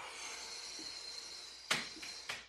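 A woman's long, breathy exhale through the mouth, slowly fading, from the strain of holding a glute bridge, with a short sharp breath near the end.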